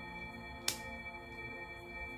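Ambient background music of steady, held ringing tones like a singing bowl, with one sharp click about two-thirds of a second in.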